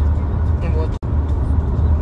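Steady low rumble of a car cabin on the move, engine and road noise heard from inside. The sound cuts out for an instant about a second in.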